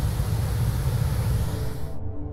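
Steady outdoor noise, a low rumble with hiss, that cuts off just before the end as music comes in.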